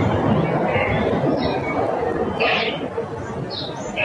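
Birds chirping in short, slightly falling calls, scattered through a steady hum of outdoor street noise.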